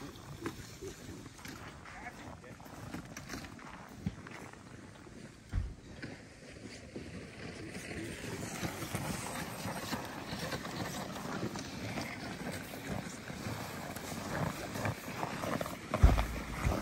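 Footsteps crunching on packed snow, with a single low thump about halfway through.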